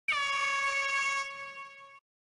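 A single held, buzzy tone that starts abruptly with a slight upward slide and holds one steady pitch, then fades away over its second half.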